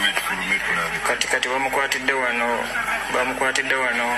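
Speech: a person's voice talking steadily throughout.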